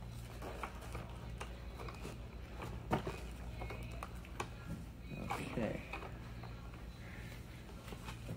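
Small clicks and light rustling as gloved hands fit metal brackets and a seat post to the sprung underside of a scooter seat, with one sharper click about three seconds in, over a steady low hum.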